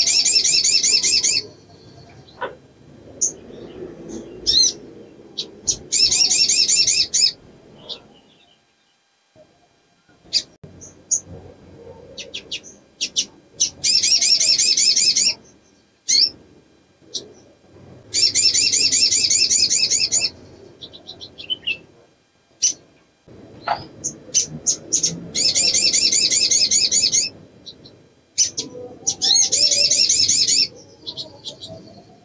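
Caged female olive-backed sunbird calling, the calls of a female in breeding condition. It gives rapid high trills about a second and a half long, repeated every few seconds, with short sharp chirps between them.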